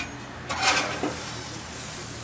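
A short metallic clatter and scrape about half a second in, then a smaller click about a second later: foil-wrapped fish being moved from a gas grill's grate onto its metal side tray.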